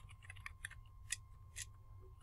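Computer keyboard being typed on: about eight faint, irregular key clicks over a low steady hum.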